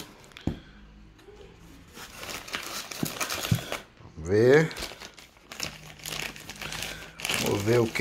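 Crinkly plastic packaging being rustled and crumpled by hand as it is pulled out of a cardboard box and handled. It comes in stretches, with a short rising voice-like sound about four seconds in, the loudest moment.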